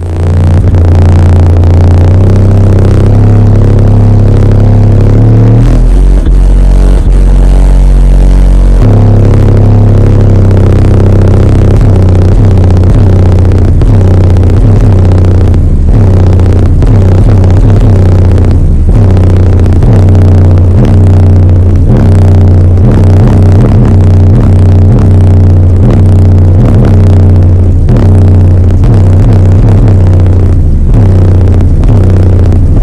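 Subwoofer in a wooden box in the cargo area of an SUV playing bass-heavy music at very high volume, heard from inside the cabin. The deep bass notes are steady and drop to a lower note between about six and nine seconds in.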